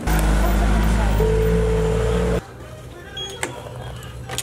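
Door-entry intercom buzzing as the electric door lock is released: a loud, steady electric buzz with a higher tone joining about a second in, cutting off suddenly after about two and a half seconds.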